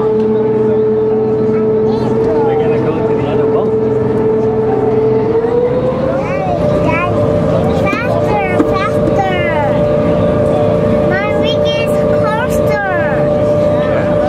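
SeaBus catamaran ferry's engines heard from inside the passenger cabin, a steady hum whose pitch rises about five seconds in as the ferry speeds up, then holds at the higher pitch.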